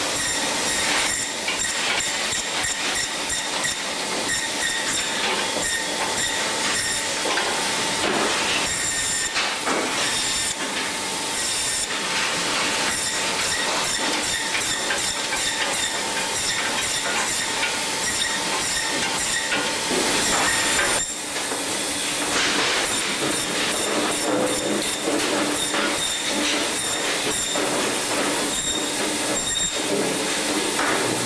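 Braher Medoc table band saw running and cutting fish: a steady hiss and whine from the blade, with a brief drop in level about two-thirds of the way through.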